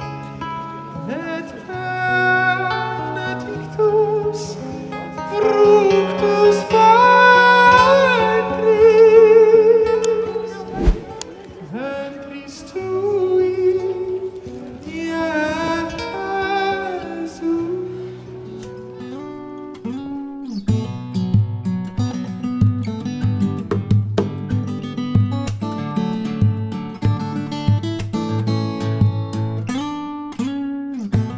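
Live busking performance: a male singer holds a wordless melody with vibrato over acoustic guitar. About two-thirds of the way through the voice drops out, and the acoustic guitar strums chords alone in a steady rhythm.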